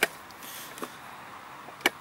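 A few short sharp clicks and taps as a hand works on a lawn mower's plastic engine cover and fuel cap, the loudest near the end.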